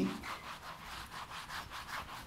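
Whiteboard eraser rubbed quickly back and forth across the board, about five scrubbing strokes a second, wiping off marker writing.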